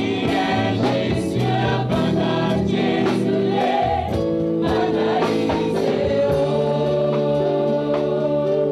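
A choir of women singing a gospel song together in held, chord-like notes, with sharp percussive hits through it.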